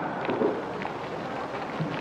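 Steady outdoor ambient noise of an athletics stadium, an even hiss with a few faint, brief sounds in it.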